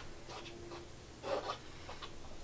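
Faint rubbing strokes of a gloved hand spreading wet white acrylic pouring paint over a canvas, the clearest a little over a second in.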